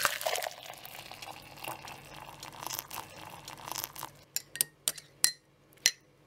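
A metal spoon stirring a drink in a glass cup, a swishing, scraping stir for about four seconds, then about five sharp clinks of the spoon against the glass, each ringing briefly.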